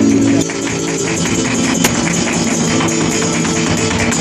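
Live flamenco: a held sung note from the cantaor ends about half a second in. After it, flamenco guitar plays under a fast, even beat of sharp hand-clapping (palmas) and the dancer's heel-and-toe footwork.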